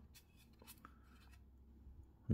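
Near silence, with a few faint scratches and small clicks from a hand-held 3D-printed plastic fuselage part being turned in the fingers.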